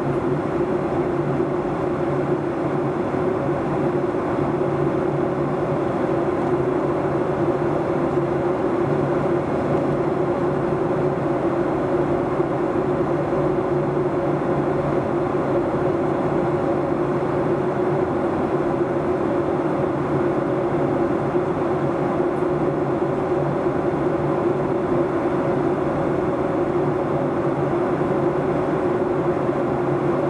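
Cabin noise inside a Boeing 737-800 airliner in flight: the steady rush of air past the fuselage with the even hum of its CFM56 turbofan engines, a few fixed low tones over the rushing noise.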